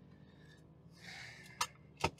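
Quiet low hum inside a car cabin, with a soft breathy exhale about a second in and a sharp click from the driver's controls near the end.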